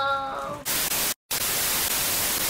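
A girl's high belted sung note, held and then cut off about half a second in by a loud burst of TV static hiss. The static drops out completely for a moment just after a second in, then comes back.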